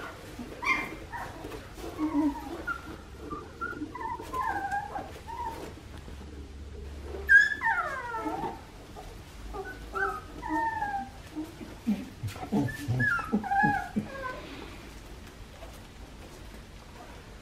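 A litter of young Australian Shepherd puppies whimpering and squeaking in short, high calls. About seven seconds in, one pup lets out a louder cry that falls steeply in pitch.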